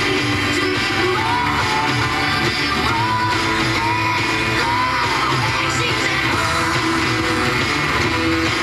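Pop song with singing and a steady beat, playing on an FM radio station through a loudspeaker.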